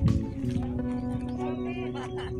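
Background music: a song with a sung voice over held instrumental notes.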